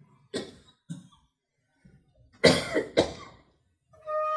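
A person coughing: two short coughs in the first second, then a louder double cough about two and a half seconds in.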